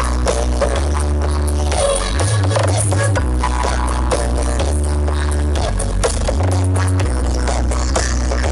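Music with a heavy bass line played loud through a truck-mounted stack of large loudspeakers. Long, sustained bass notes change pitch every second or so under the rest of the mix.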